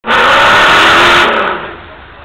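Off-road buggy's engine revving hard as it climbs a steep dirt slope, loud for just over a second, then dropping away sharply.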